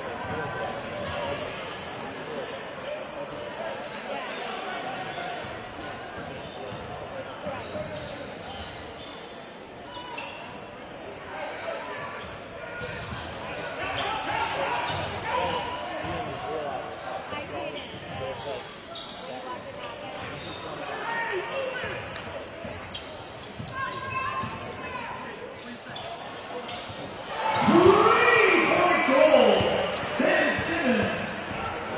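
Live basketball game sound in a gym: a ball bouncing on the hardwood court under a steady hum of crowd voices echoing in the hall. The sound gets louder near the end.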